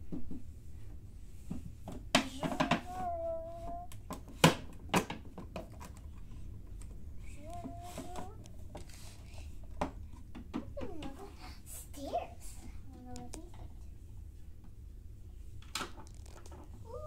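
A young girl's quiet, wordless vocalizing and murmured play voices while she plays with dolls, with a few sharp clicks and knocks of plastic toy pieces being handled, the loudest about two seconds in and twice around four to five seconds in.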